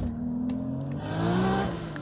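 Toyota Supra's 2JZ straight-six accelerating hard in the distance, its revs climbing steadily in pitch and loudness, then falling off briefly near the end.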